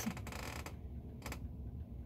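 A few faint clicks and rustles of a cardboard gatefold LP jacket being held up and moved, over a low steady hum.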